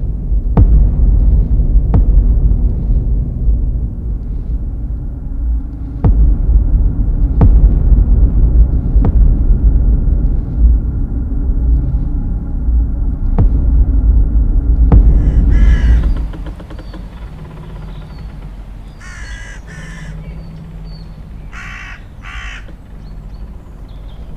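A loud, deep rumble with sharp knocks every second or two cuts off suddenly about two-thirds of the way through. Crows then caw in short runs of calls over a quieter background.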